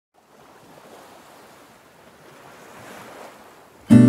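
Soft, steady wash of waves, swelling and easing gently. Just before the end, loud strummed acoustic guitar music cuts in.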